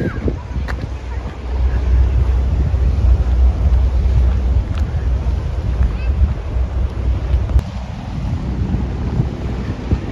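Wind buffeting the microphone in a heavy low rumble, strongest through the middle and easing about three-quarters of the way through.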